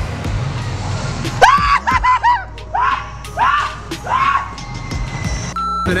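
A run of short, high-pitched screams, each one rising and falling, starting about a second and a half in, over music; the sound breaks off briefly just before the end.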